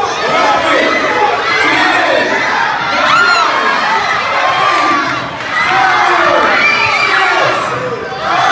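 A gym crowd, many of them children, shouting and cheering over one another at a youth basketball game, with a brief lull about five seconds in.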